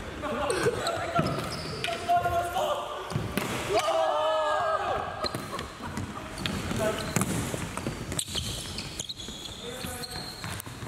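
Indoor floorball game in a sports hall: players' voices call out and echo around the hall, with scattered knocks of plastic sticks and ball on the wooden floor. The voices are loudest a few seconds in.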